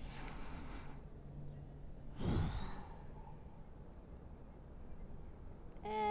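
A woman breathing audibly through slow yoga cat-cow stretches: a soft breath at the start, then a louder breath about two seconds in.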